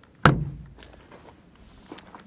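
Fuel filler door on a Ram 3500 pickup pushed shut with a single thunk about a quarter second in.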